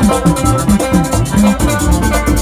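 Live band music: acoustic guitars picking notes over an electric bass line that slides between notes, driven by a fast, steady high percussion rhythm.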